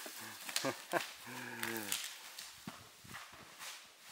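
A large boulder tumbling down a steep wooded slope: a string of sharp knocks that grow fainter as it rolls away, the loudest about a second in. Over it a man lets out a drawn-out exclamation.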